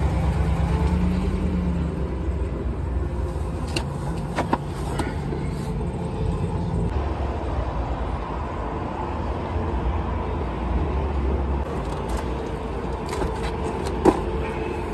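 Road traffic: a steady low rumble of cars going by, with a few light clicks from handling near the microphone.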